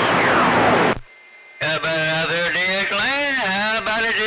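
CB radio receiving: a weak station buried in hiss and static cuts out about a second in. After a short quiet, a strong station comes in with a man's drawn-out voice, its pitch swooping up and down.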